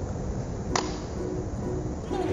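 A single sharp click about a second in, as the push-button lipstick case is pressed to release the lipstick, over faint background music.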